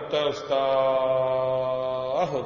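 A man's voice chanting, holding one long steady note for about a second and a half.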